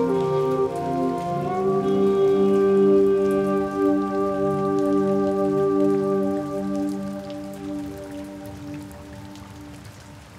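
Steady rain with a sustained ambient music chord held over it; the chord shifts about a second and a half in, and both fade away over the second half.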